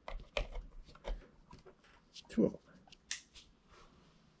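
Small sharp plastic clicks and rustling as a USB cable and LED bulb are handled and plugged in, bunched in the first second with a few more clicks later. A single spoken word comes about halfway through and is the loudest sound.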